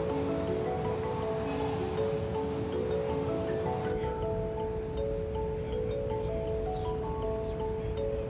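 Background music: a light melody of short, stepping notes over one steady held note, with a low steady room noise underneath.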